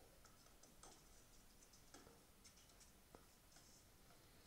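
Near silence, with a few faint, sharp clicks spread through it.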